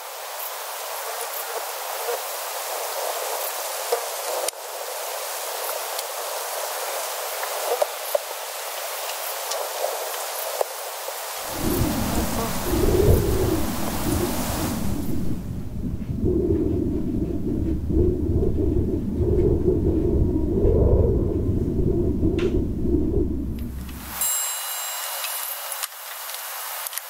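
An edited soundscape: a steady hiss with scattered clicks, joined about 11 s in by a deep rumble. The hiss falls away a few seconds later and the rumble carries on alone, then stops abruptly near the end as the hiss returns.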